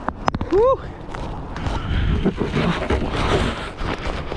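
Wind buffeting the camera microphone in a snowstorm, with snow crunching under footsteps. A short rising vocal yelp comes about half a second in.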